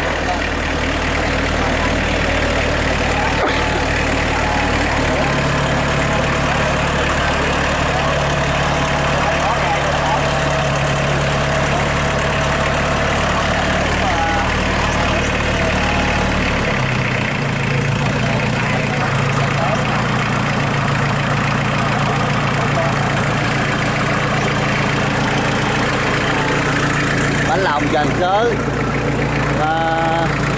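ISEKI 5470 tractor's diesel engine running steadily at idle; about 17 seconds in, its note steps up in pitch and stays there.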